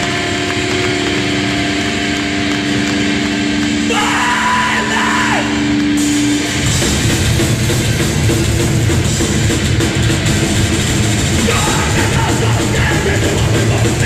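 Hardcore punk band playing live and loud: held, ringing notes for about the first six seconds, then the full band crashes in and plays on.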